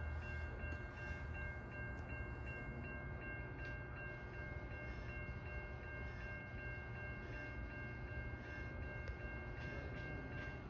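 Distant approaching train: a faint low rumble with a steady, thin high-pitched whine of a few tones held throughout.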